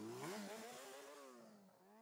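A faint motor revving, its pitch rising and wavering up and down, then fading out to silence about a second and a half in.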